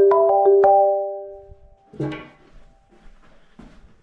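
Marimba notes, a quick run of about four struck notes in the first second that ring on and fade away. A short, soft sound follows about two seconds in.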